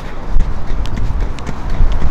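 Powerslide Kronos Reign inline hockey skates on asphalt, taking a quick series of short, choppy sprinting strides uphill: a sharp clack as each wheeled boot strikes the pavement, over a low, steady rumble of wheels rolling.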